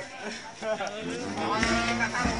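Men's voices talking and calling out in a street crowd, with one long drawn-out vocal call in the second half. Low rumbling noise comes in near the end.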